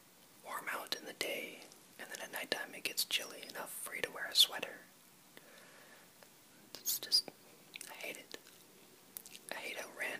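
A person whispering, talking in phrases, with a pause of a second or two about halfway through.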